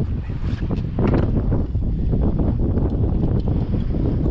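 Wind buffeting the microphone in a steady low rumble that gets louder about a second in, with a few light knocks.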